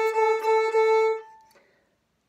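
Violin's open A string bowed in a run of short repeated notes, the 'Bob is a noisy bird' rhythm, ending on a longer note that stops a little over a second in and rings off.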